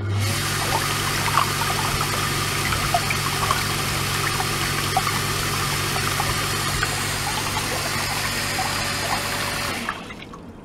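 Small electric circulation pump running with a steady low hum while its hose outflow jets water into a plastic tub of water, a constant rushing splash with scattered small bubbly pops. It starts abruptly and cuts off shortly before the end.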